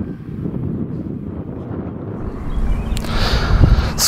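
Wind buffeting an outdoor microphone: a rough low rumble that grows louder near the end.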